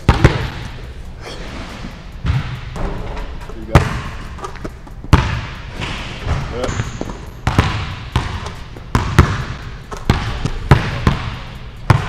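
Basketballs bouncing on a hardwood gym floor, a dozen or so sharp bounces at irregular intervals, each one echoing in the hall.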